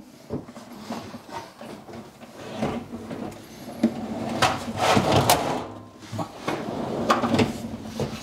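A kitchen drawer box being slotted onto its runners in a base cabinet: a string of irregular knocks, clicks and sliding scrapes, busiest around the middle.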